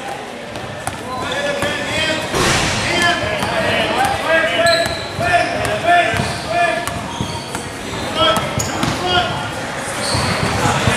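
Basketball being dribbled on a gym court, with many short squeaks from sneakers on the floor during play.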